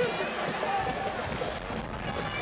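Background voices and chatter of people milling around on the field, with no clear words, over steady outdoor crowd ambience.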